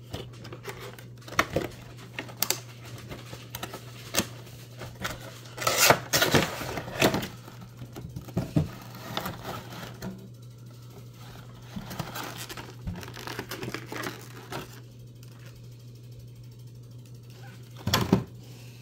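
A cardboard Funko Pop box being opened and the figure's clear plastic insert handled: irregular clicks, scrapes and plastic crinkles, busiest around six to seven seconds in and sparse near the end.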